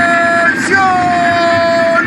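A drill sergeant's voice bellowing a drawn-out "¡Atención!". Each syllable is held long on a slowly falling pitch, with a short break about half a second in.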